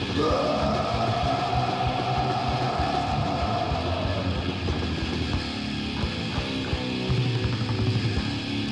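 Death metal demo recording: distorted guitars over fast, dense drumming, with a high held note that bends up at the start and lasts about four seconds.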